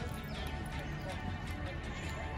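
Otters chirping as the group moves: short, falling high-pitched calls, one about half a second in, over a steady low background rumble.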